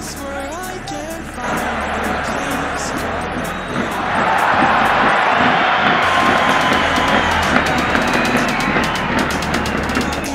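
Background music with a beat, over a stadium crowd roar that swells about a second and a half in and is loudest from about four seconds, reacting to an attack on goal.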